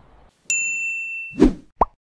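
Editing sound effects for a title card: a bright, bell-like ding about half a second in that rings for nearly a second, then a short thump and a quick upward-gliding plop near the end.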